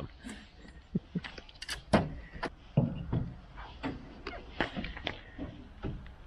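A series of short, separate clicks and knocks from a Land Rover Discovery 3's open bonnet being handled and pulled down.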